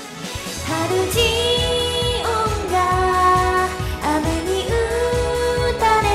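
A young woman singing a pop song with long held notes along to a karaoke backing track with a steady drum beat, her voice picked up by an earphone's inline microphone.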